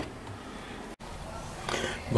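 Quiet, steady background noise with a faint low hum, broken by an instant of dead silence about a second in where the video is cut.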